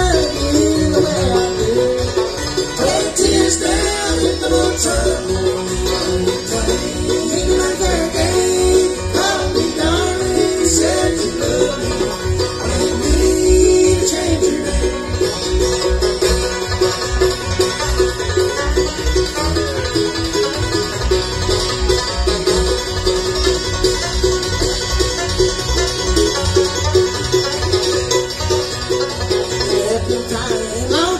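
A live bluegrass band playing: banjo, mandolin, acoustic guitar and upright bass, with the bass keeping a steady beat.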